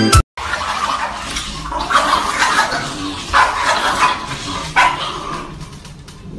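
Small dogs barking at each other through a glass door, about five short, harsh barks spread over the middle of the clip, after a brief dropout at the very start.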